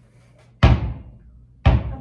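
Wilson basketball dropped from about 2 m onto a hard floor, bouncing twice: two loud thumps about a second apart, each fading quickly.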